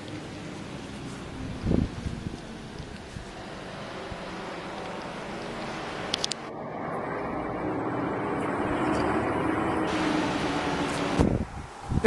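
Wind buffeting a phone microphone: a steady rushing noise that swells in the second half, with a sharp knock about two seconds in and another near the end.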